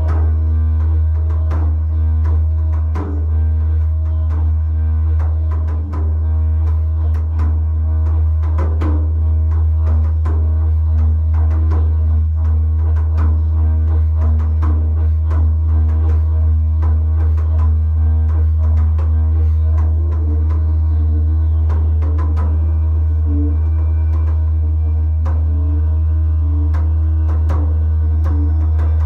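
Didgeridoo played as one continuous low drone with shifting overtones, dipping briefly twice in the first six seconds, over irregular hand-drum strikes.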